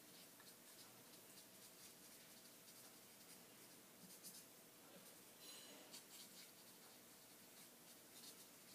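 Faint scratching of a pen writing on paper in short, irregular strokes, with a brief high squeak a little past halfway.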